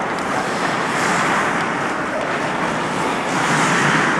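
Ice hockey rink ambience during play: a steady hiss of skates on the ice and the open rink, with a few faint clicks.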